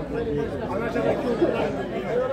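Several men's voices talking over one another in a steady babble of conversation.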